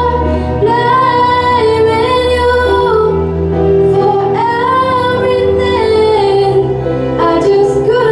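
A girl singing a slow ballad into a handheld microphone, holding long notes and gliding between them, over sustained low chords of a backing accompaniment.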